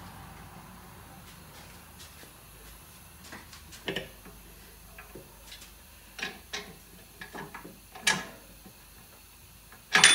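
Scattered metal clicks and knocks from a 2009 Buick Enclave's rear suspension knuckle and control arm as they are shifted by hand to line up a bolt hole. They begin about three seconds in, and the sharpest knock comes about eight seconds in.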